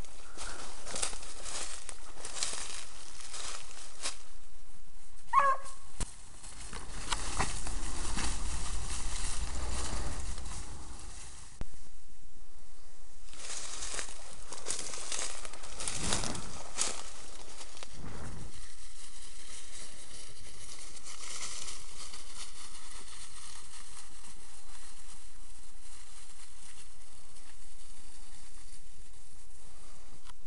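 Rustling and crunching through dry leaf litter and brush, with one short pitched cry about five seconds in and a low rumble between about six and twelve seconds.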